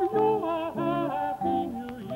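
Choral singing, several voices with vibrato moving through short notes in a carol melody.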